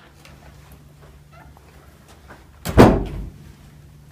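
A door shuts with one loud bang about three seconds in, dying away within half a second, over a steady low hum of room tone.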